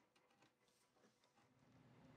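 Near silence: room tone, with a few very faint ticks and a faint low hum that comes in near the end.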